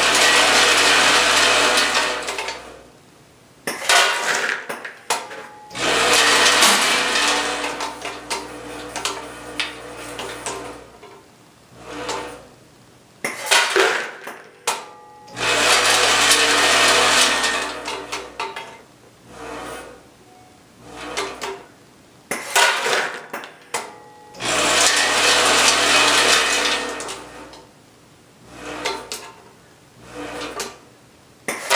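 Logical Machines S-6 cascading weigh filler's vibratory feed trays running in cycles, about every nine seconds, four runs in all, with hard dog treats rattling across the stainless steel pans over a low hum. Between the runs come quieter clatters and sharp clicks.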